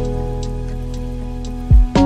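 Lofi hip-hop track holding a sustained chord over a rain sound layer, with a sharp drum hit at the start and a kick drum thump near the end.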